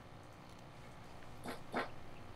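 Two short, high yelps about a third of a second apart, heard faintly over low room tone.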